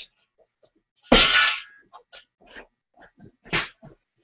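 A steel angle-iron frame piece clanks and scrapes as it is set against a wooden tabletop, with a short ringing burst about a second in, followed by several light knocks.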